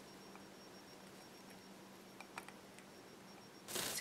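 Very quiet room tone with a faint steady hum, a couple of faint small clicks a little past the middle, and a short breathy hiss near the end.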